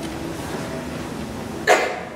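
A single short cough near the end, over faint room noise.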